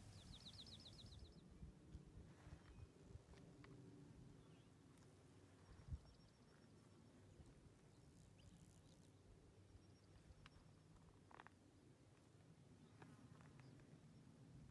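Near silence: faint outdoor ambience with a low rumble, a brief rapid high trill in the first second, faint high ticking trills later on, and one soft thump about six seconds in.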